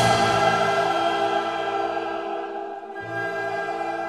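Classical choral music: voices holding long, sustained chords, with a slight dip in loudness about three seconds in.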